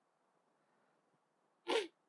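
A pause in speech with only faint room hiss, then a man's voice speaks one short, breathy word near the end.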